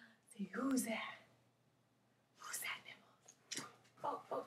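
A woman's soft, wordless voice: a drawn-out, wavering 'ooh' near the start, then a breathy whisper about two and a half seconds in, with a few faint clicks near the end.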